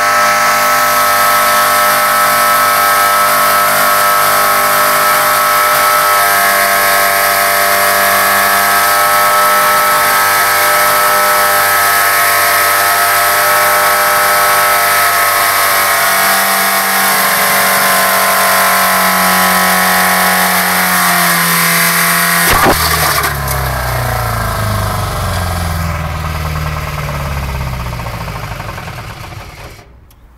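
Ford Fiesta engine, run with no oil, held at a steady high rev for over twenty seconds. About three-quarters of the way through there is a sharp bang as it fails, which the uploader has as a connecting rod breaking through the block. The revs then fall away as the engine winds down to a stop near the end.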